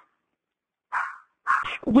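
A dog barking twice, two short barks about half a second apart starting about a second in, heard through the compressed audio of an online web conference.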